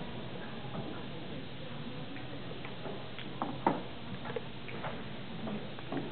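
Steady room noise with scattered, irregular light clicks and knocks, the loudest a little past halfway through.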